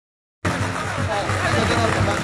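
Street-procession crowd noise starting abruptly about half a second in: many voices talking and calling over festival music with a low repeated beat.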